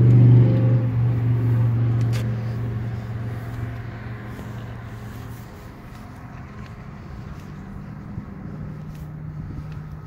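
A vehicle engine running with a steady low hum that fades away over the first five seconds or so, leaving faint outdoor background.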